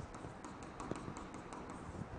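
Light taps and ticks of a stylus pen on an interactive touchscreen display as letters are written on it, a faint irregular series.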